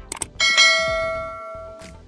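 Two quick mouse-click sounds, then a single bright notification-bell ding that rings out and fades over about a second and a half: the sound effect of clicking a subscribe bell. Background music with a soft beat plays underneath.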